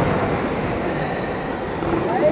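Steady rushing noise of a large electric pedestal fan blowing, mixed with the echoing background hubbub of a big indoor sports hall.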